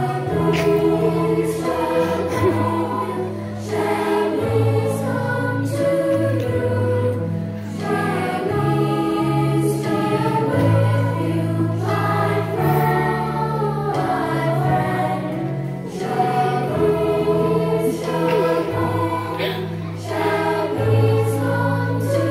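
A children's choir singing a song together over instrumental accompaniment with a steady bass line that changes note every second or two.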